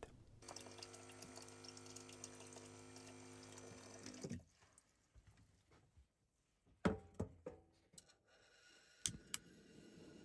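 Water running from a sink tap with a steady hum for about four seconds, then cutting off. A few sharp clicks follow, and near the end a gas stove burner lights and burns with a steady hiss.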